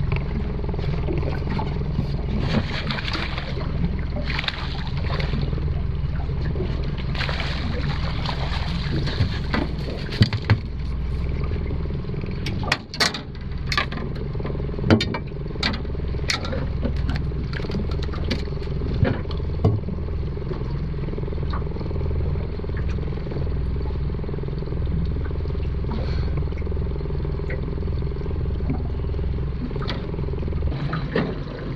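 Yamaha 60 hp outboard motor running at low, steady revs on a small aluminium boat. A run of sharp knocks and clatters comes midway as a hooked fish is brought into the aluminium hull and handled.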